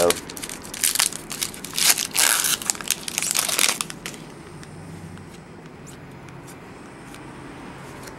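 Plastic wrapper of a Panini Prestige basketball card pack being torn open and crinkled in bursts through the first half. After that it goes quieter, with a few light ticks as the cards are handled.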